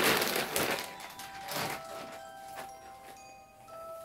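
Plastic mailer bag rustling and crinkling as a garment is pulled out of it, loudest in the first second. After that, quiet background music with soft bell-like mallet tones.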